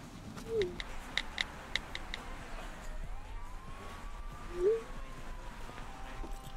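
Smartphone keyboard clicks from someone typing a text: a quick run of taps in the first two seconds, then a few more. Two short chirps sound about half a second in and again near the five-second mark, and a faint long tone rises and slowly falls over the last three seconds.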